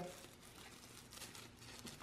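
Faint crinkling of a dry sheet of seaweed being torn and crumbled by hand.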